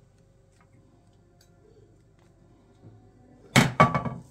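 Quiet kitchen room tone with faint ticks as grated cheese is scattered by hand, then two sharp knocks close together near the end, from kitchenware being handled on the worktop.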